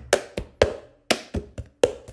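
Cup-game rhythm: a cup rapped and set down on a cloth-covered tabletop between hand claps. There are about seven sharp knocks in two seconds, each ringing briefly.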